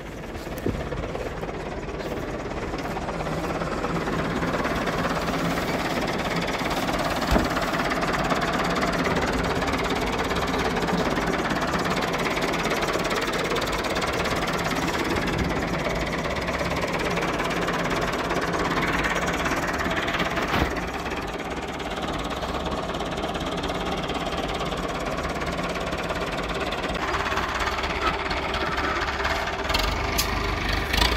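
IMT 577 DV tractor's diesel engine running steadily, the tractor working a three-shank subsoiler.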